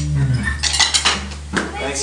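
A band's final held low chord bends downward in pitch and cuts off in the first half-second. It is followed by an irregular clatter of short clinks and knocks.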